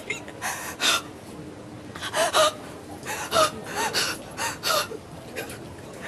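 A distressed woman's short, breathy gasps and whimpering cries, about half a dozen of them, each under half a second.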